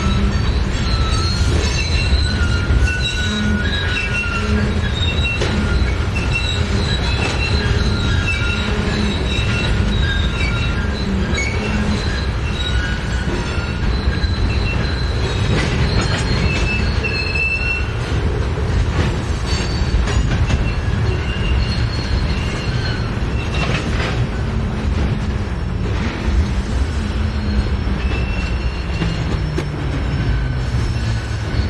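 Freight train of tank cars and covered hoppers rolling past: a steady rumble of steel wheels on rail, with high-pitched wheel squeal that comes and goes.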